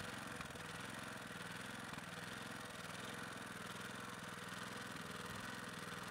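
Small engine-driven portable water pump running steadily at an even speed.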